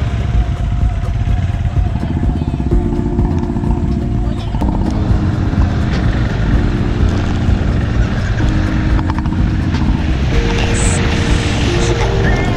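Motorcycle riding noise, a steady low rumble of engine and wind on the microphone. From about three seconds in, background music of held chords comes in over it, with the chord changing about every two seconds.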